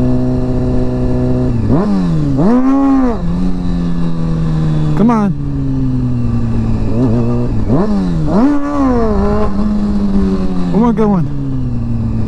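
Honda CBR sport bike engine running in gear at steady revs, broken by several sharp throttle blips whose pitch shoots up and falls back, the biggest about three seconds in: wheelie attempts.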